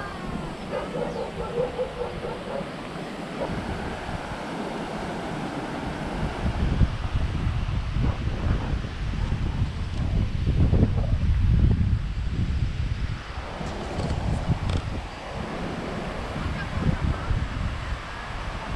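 Wind buffeting the microphone in gusts over a steady rush of noise, the low rumbling heaviest from about six to thirteen seconds in.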